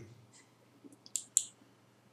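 A handful of faint, short computer-mouse clicks in the first second and a half, closing a pop-up dialog on screen.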